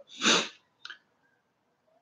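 A man clears his throat once in a short, rough cough-like burst, followed shortly after by a faint click.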